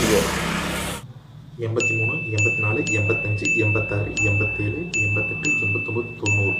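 A quick run of bright, struck chime dings, about two a second, each ringing on one steady pitch over a low pulsing beat: a sound effect ticking along with an on-screen counter. It follows a second of steady outdoor noise that cuts off suddenly.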